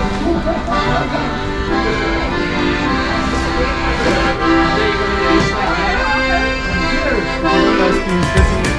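Instrumental background music: sustained chords with a melody moving over them, at a steady level.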